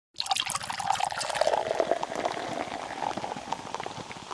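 Beer being poured into a glass, its foam head fizzing and crackling with countless tiny bubble pops; the pour is fullest in the first second and a half, then the fizz thins and fades.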